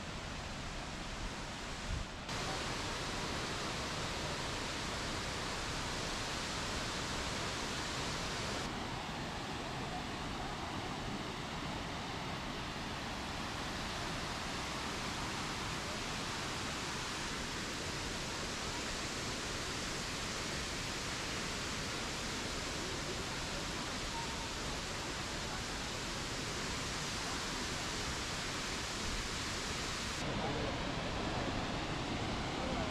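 The steady rush of Tortum Waterfall's falling water, heard close as a dense, even noise. Its tone changes abruptly about two seconds in and again near nine seconds.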